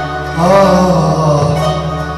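Live Arabic-style song: a singer holds a long, wavering note over band accompaniment, the phrase starting about half a second in.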